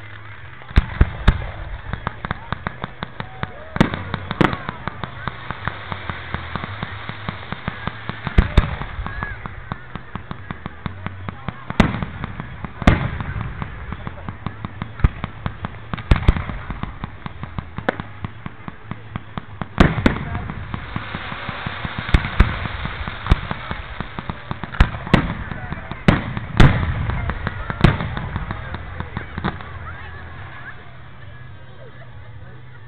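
Fireworks going off in quick succession: many loud bangs from bursting shells, mixed with strings of rapid crackling pops. There is barely a pause between them all the way through.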